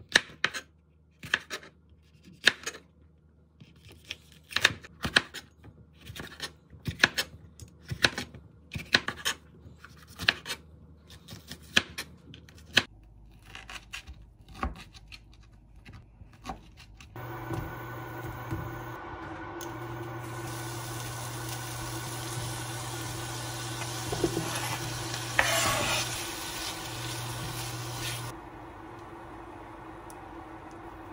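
A kitchen knife chopping bell peppers and sausage on a plastic cutting board, in irregular strokes of about two a second. From about halfway through, chopped vegetables and ham sizzle steadily in a frying pan while they are stirred, and the sizzling stops shortly before the end.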